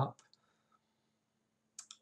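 A few short, faint computer mouse clicks as a chart is switched: a couple just after the start and a couple more near the end, with near silence between.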